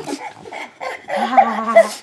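A pug vocalizing, with short sounds early on and a louder held sound lasting under a second in the second half.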